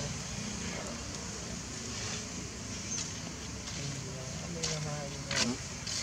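Outdoor background of a steady low rumble of distant road traffic, with faint distant voices. A short pitched call falls quickly in pitch about five and a half seconds in.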